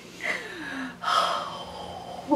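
A woman's breathless, wordless fit of giggles: a squeaky sound sliding down in pitch, then a long breathy gasp from about a second in.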